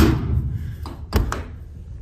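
A steel horse-trailer door swung shut with a loud metal thunk that rings on briefly, followed just over a second later by a couple of lighter metal knocks. Wind rumbles on the microphone throughout.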